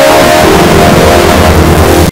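A TV ident jingle pushed through heavy distortion effects: loud, harsh noise swamps the tune, leaving only faint traces of it over a pulsing low buzz.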